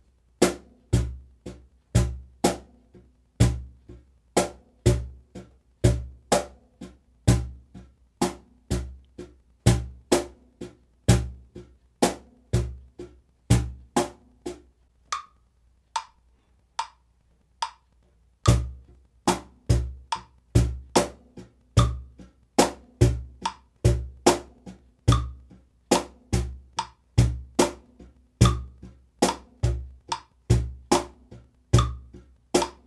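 Cajón played with bare hands in a steady eighth-note groove: bass strokes on beat one and the off-beats of two and three, with higher, lighter tones between and accents on two and four. The groove pauses for about three seconds around the middle, leaving only a metronome's short beeps on each beat, then starts again.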